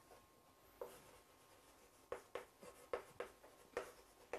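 Chalk writing on a chalkboard: faint, short strokes and taps, one about a second in, then a quick run of them in the second half.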